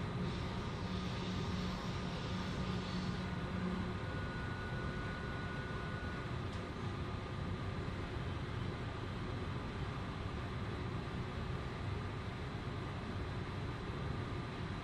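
Swiss S-Bahn commuter train running at speed, heard from inside the carriage: a steady rumble of wheels on rails with a low hum that stops about four seconds in.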